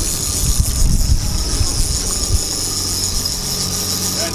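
Single-action salmon reel's click drag giving off a continuous jingling ratchet while a hooked chinook salmon is fought, over low uneven rumbling of wind on the microphone, strongest in the first half.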